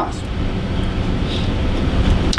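Steady low rumbling background noise in a pause between speech, with no distinct events.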